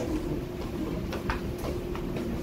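A steady low hum under room noise, with a few faint clicks a little past a second in.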